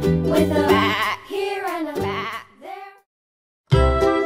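Children's background music: the tune ends in a wavering, falling bleat-like sound, then cuts to silence for under a second before a new bouncy tune starts near the end.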